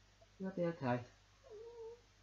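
A man's voice making crying sounds for a teddy bear puppet: two short sobbing cries about half a second in, then a softer held whimper near the end.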